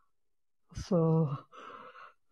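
A person's voice: after a brief silence, a short voiced hesitation sound followed by a breathy exhale, like a sigh.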